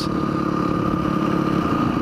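Single-cylinder four-stroke off-road motor running at a steady cruising speed, one even engine note that neither rises nor falls, with wind rushing past.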